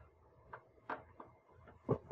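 A few faint clicks of a screwdriver working at a screw in a laser printer's metal frame, then one short louder sound near the end.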